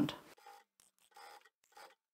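Faint rustling of fabric being handled: a few brief scratchy rubs.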